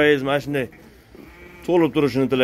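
Hisor sheep bleating: a loud quavering bleat at the start, then another beginning near the end.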